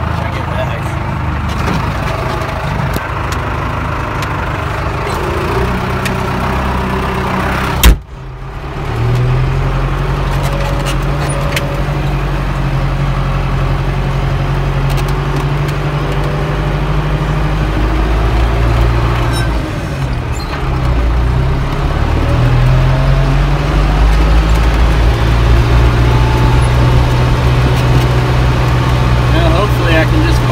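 Tractor engine running steadily as the tractor drives along, with one sharp knock about eight seconds in. The engine gets somewhat louder over the last few seconds.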